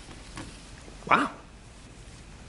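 A man's short exclamation, "Wow!", about a second in, over faint rubbing of a polishing cloth on a car's headlight lens.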